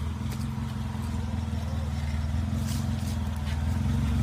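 Suzuki SJ-series 4x4's engine running at low revs as it crawls down a rough dirt trail: a steady low drone that grows slightly louder as the vehicle comes closer, with a few faint high scratches.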